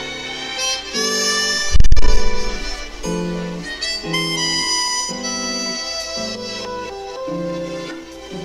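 Jazz recording playing: a sustained, reedy melody line over low notes stepping along about twice a second. A loud, low thump comes about two seconds in.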